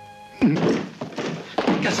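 A held music chord, cut off about half a second in by a single loud wooden thunk of a door being banged open, followed by a man's voice.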